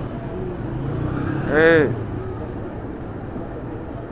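Motorcycle engines running steadily on a street, with a person shouting one short call about halfway through.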